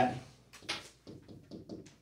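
A pen writing on the glass of a touchscreen whiteboard: one short scratchy stroke about a second in, then a few faint taps.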